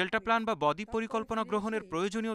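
Speech only: a voice talking in Bengali without pause.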